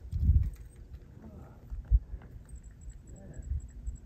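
Low muffled thumps and one sharp knock about two seconds in, with faint voices in the background.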